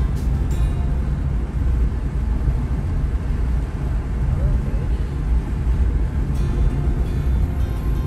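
Steady low road rumble of a car driving, heard inside the cabin, with music playing over it.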